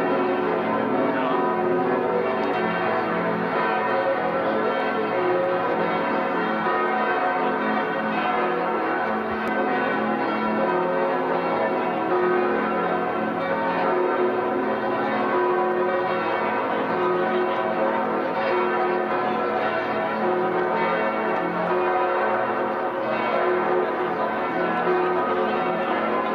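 Paderborn Cathedral's large church bells ringing together in a continuous full peal, many overlapping bell tones sounding without a break.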